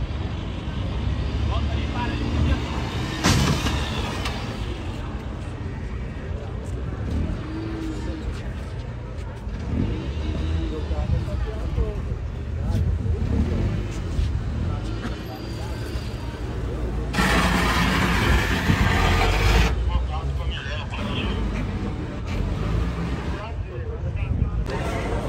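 Car-meet ambience: car engines running at low speed with a steady low rumble, and voices in the background. A loud rushing burst lasts about two and a half seconds, some seventeen seconds in.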